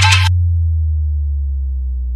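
End of an Adivasi timli DJ remix. The full mix cuts off a fraction of a second in, leaving one deep held bass note that slowly falls in pitch and fades.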